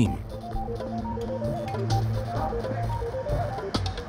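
Background music: a line of short, stepping notes over a steady low bass.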